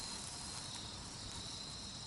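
Faint, steady high-pitched insect trilling, of the kind crickets make outdoors, over low background hiss.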